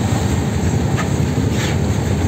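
Wind buffeting the microphone on the open deck of a moving river boat, a steady low rumble, with the rush of choppy water along the hull and a couple of faint splashes near the middle.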